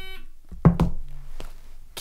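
Tabletop quiz buzzer's electronic tone cutting off just after the start, followed by a sharp thump well under a second in and a lighter knock a little later.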